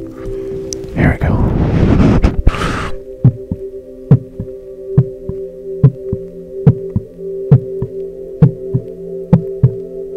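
A stethoscope chestpiece rubs and scrapes against the microphone for the first few seconds. Then a heartbeat sounds as steady, regular thumps, about one a second, over sustained background music tones.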